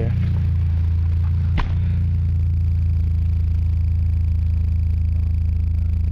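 Honda H22 DOHC VTEC four-cylinder engine idling steadily through a 2.5-inch straight-back exhaust. A single sharp knock about a second and a half in.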